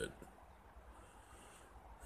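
Near silence: faint steady background hiss, with no distinct sound.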